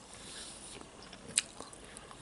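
Close-miked chewing of a grilled cheese sandwich: soft, wet mouth sounds with one sharp mouth click about one and a half seconds in.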